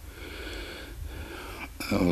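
A man breathing in audibly through his nose, close to the microphone, in a pause between phrases. His voice comes back in near the end.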